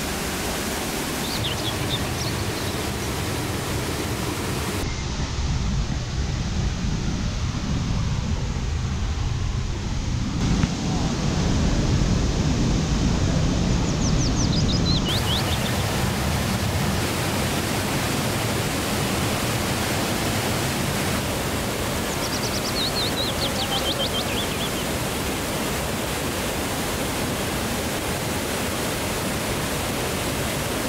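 Rushing water from a monsoon-swollen tiered waterfall pouring over rock: a steady roar whose level and tone shift a few times. A few short series of high chirps sound over it, near the start, mid-way and about two-thirds through.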